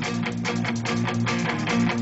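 Live rock band vamping without vocals: a guitar strummed in a steady, even rhythm over held chords.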